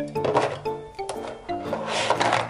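Plastic markers and pens rattling and clicking against each other as handfuls are sorted into clear plastic cups, in two bursts near the start and near the end. Background music plays under it.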